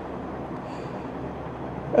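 Steady background noise, even and unchanging, with no distinct events.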